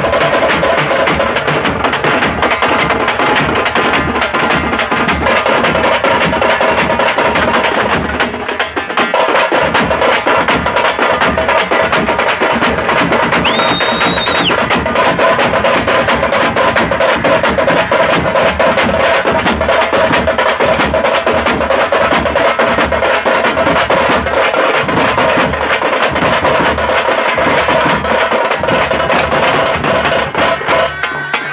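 Tamate and chapdoll drum band beating a fast, loud, continuous rhythm with sticks on the drumheads, with a brief dip a little after eight seconds. A short high steady tone sounds for about a second midway.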